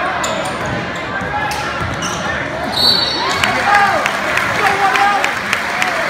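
A basketball bouncing on a hardwood gym floor during live play, amid shouting from players and the crowd in a large echoing gym. A short, high referee's whistle sounds about three seconds in.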